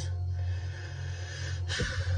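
A person's short breathy laugh, mostly through the nose, over a steady low hum.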